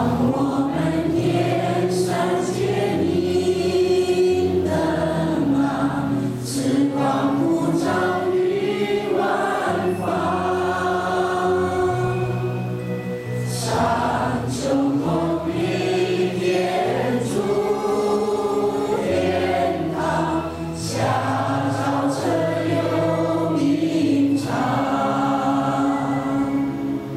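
A choir singing a slow devotional song over instrumental backing, with sustained low notes underneath.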